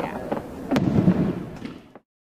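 Voices of a crowd talking, with a few sharp pops, louder about three-quarters of a second in, then fading out near the end.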